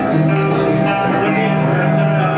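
Live band's electric guitars starting the song, cutting in suddenly and ringing out in held chords over a steady low note.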